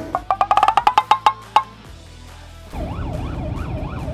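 A quick run of wood-block clicks, about ten a second, rising in pitch for a second and a half. This is followed by a siren wailing up and down about twice a second through the second half.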